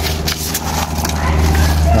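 Sheet of P600 wet-and-dry sandpaper being torn and folded around a sanding block by hand, with short crackles of paper handling over a steady low hum that has evenly spaced overtones.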